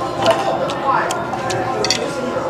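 Metal cutlery clicking against plates and scallop shells: several short, light clicks spread over the two seconds.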